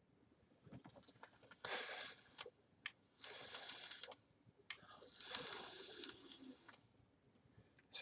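Faint, airy hissing of air drawn through a vape's atomizer, with a few sharp clicks, and a breathy exhale of vapour in between; the draw-and-exhale comes twice.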